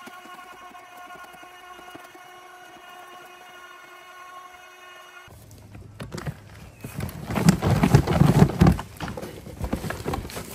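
Ryobi 36V brushless crushing shredder running with a steady motor whine. It cuts off abruptly about five seconds in, followed by loud rustling, knocking and thumping as a gloved hand handles the plastic collection bin and the shredded leaves and twigs inside it.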